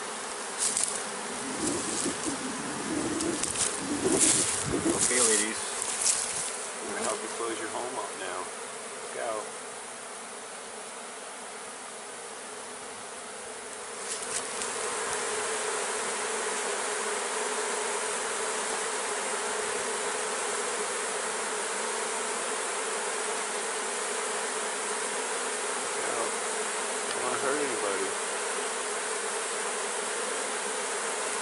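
A honey bee swarm buzzing steadily around an open hive box as it settles in. In the first several seconds there are scattered knocks and handling noises; from about halfway the buzzing grows louder and fuller and holds steady.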